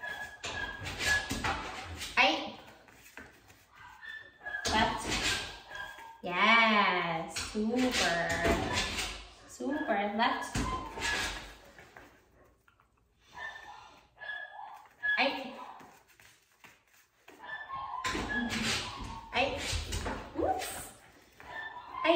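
A woman's voice in sing-song tones, with no clear words, including one long wavering call about six seconds in.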